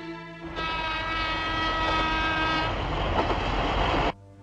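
Train horn sounding one long steady blast of about two seconds over the noisy rumble of a train, which carries on after the horn stops and then cuts off abruptly at the end.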